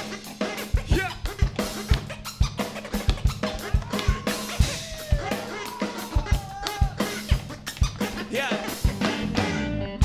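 Live band playing an instrumental passage between vocal lines: a drum kit keeps a steady beat of bass drum and snare hits, with band instruments underneath and a sliding melodic line in the middle.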